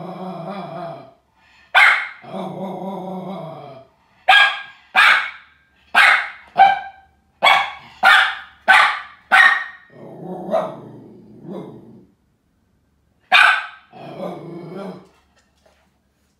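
A dog barking about ten sharp times, in a quick run of barks about half a second apart from about four seconds in, with longer, lower drawn-out sounds between the barks. The barking is at a Halloween skull decoration whose light flashes on and off: the dog is frightened of it and cannot get its tennis balls out from beside it.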